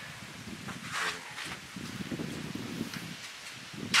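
Wind noise on the microphone: an irregular low rumble with a faint hiss, and a single sharp knock near the end.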